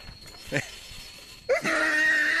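A person's voice: a short sound about half a second in, then a loud, drawn-out cry held at one steady pitch starting about one and a half seconds in. A faint, steady high insect trill runs underneath.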